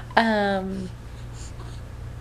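A woman's single drawn-out wordless vocal sound, falling slightly in pitch and lasting under a second, over a steady low hum.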